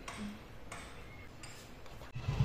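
A few faint, irregular clicks, with one short hum from a voice near the start.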